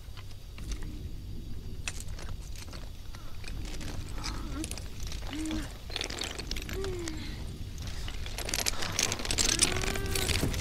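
Heavy metal chain clinking and rattling in scattered small clicks, with a few short grunts over a low steady rumble.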